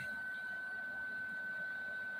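A steady, high-pitched single-tone whine holding at an even level over quiet room tone.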